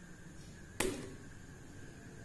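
One short, sharp click or tap about a second in, dying away quickly, over faint room tone.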